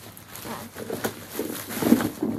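Thin plastic shopping bag rustling and crinkling as it is handled and emptied, in an uneven run of crackles with a louder burst near the end.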